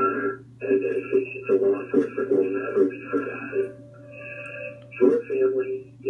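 A police dispatcher's voice coming over the radio through a scanner's small speaker, narrow and tinny over a steady low hum, with a brief held tone partway through. It is part of an end-of-watch last-call broadcast.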